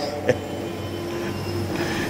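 Steady low background hum with a few faint steady tones above it, and one faint click about a third of a second in.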